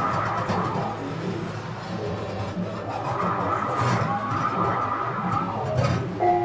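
Inside-the-piano playing on a grand piano: an object is worked against the strings, giving a continuous rough, noisy rumble with no clear notes.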